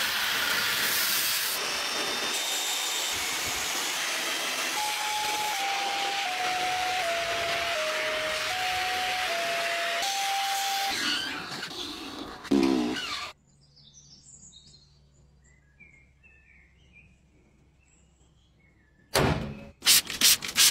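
Steam cleaner's jet hissing steadily as it blasts mud off a car's fender and engine bay, running for about eleven seconds before cutting off. A quiet stretch with a few small bird chirps follows.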